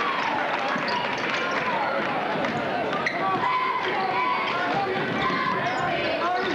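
Basketball dribbled on a hardwood gym floor amid the steady chatter of a gym crowd.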